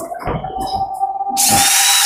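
A Makita-branded cordless drill spinning freely, its motor starting a moment in and running with a steady whine. A loud hiss joins it about a second and a half in.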